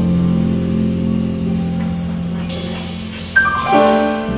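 Jazz quartet of guitar, piano, double bass and drums playing the slow opening of a ballad in F: a held chord that slowly fades, then a new chord struck about three and a half seconds in.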